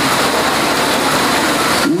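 A loud, steady rushing noise with no pitch, cutting in sharply and stopping just as sharply after about two seconds.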